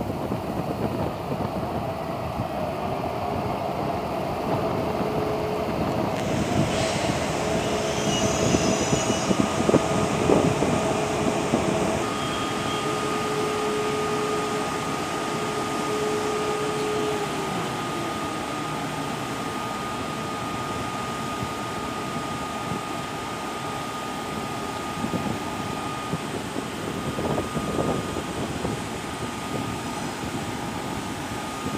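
Electric trains in a station: the hum and rumble of a train's traction motors as it runs in and slows, its whine sinking in pitch about halfway through. A steady higher whine from an SNCB Siemens HLE 18 electric locomotive near the platform runs through the second half.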